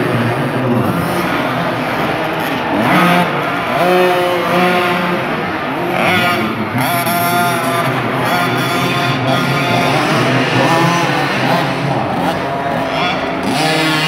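Small 50cc youth motocross bikes revving up and down as they ride the track, the engine pitch rising and falling several times.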